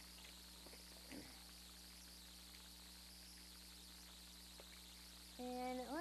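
Near silence: room tone with a steady low electrical hum and hiss, and one faint brief sound about a second in.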